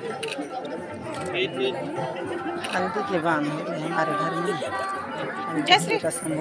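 Many voices chattering at once in a crowd, with a single sharp click near the end.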